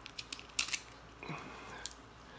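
Small kitchen knife cutting through the shell of a boiled salted egg: a few sharp crackling clicks in the first second, then a softer scrape and one more click near the end.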